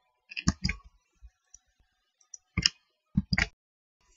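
Computer mouse clicking: two clicks about half a second in, one more past the middle, and a quick pair near the end, as a registration code is copied, pasted and submitted.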